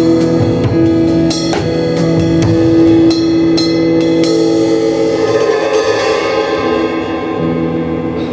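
Drum kit played live with a worship band: snare, tom and cymbal strikes over long held chords from the other instruments. The drumming is busy at first and thins out after about five seconds, leaving mostly the held chords.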